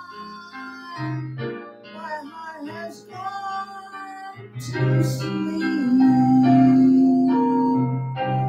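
A man singing into a handheld microphone over a karaoke backing track with keyboard or piano accompaniment. He holds one long note through the second half, the loudest part.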